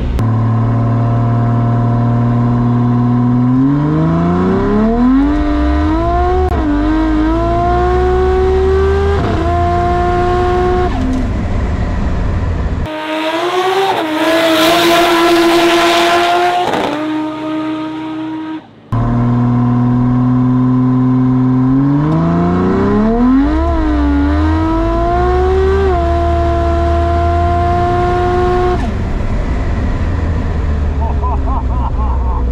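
Turbocharged drag car's engine heard from inside the cabin, holding a steady note, then climbing in pitch with a drop at each gear change as it accelerates down the strip. Around the middle, a louder, hissier stretch from trackside as the car pulls away, after which the climbing engine and shifts are heard again from inside.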